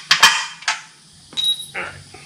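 Metal hand tools clanking against the drive unit's metal housing and subframe: a few sharp knocks in the first second, then a brief high ring about halfway through.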